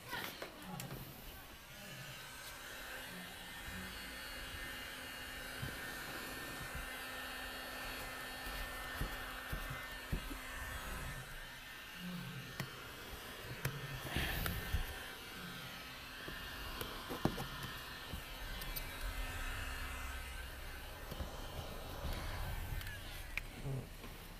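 Handheld heat gun running steadily, its fan motor humming with a blowing hiss, with a few light knocks and taps, the louder ones near the middle.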